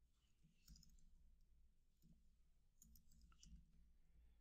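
Near silence broken by a few faint computer keyboard key clicks as code is typed.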